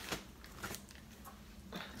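Faint rustling and a few light knocks as a plastic spray bottle is lifted out of a cardboard box and handled.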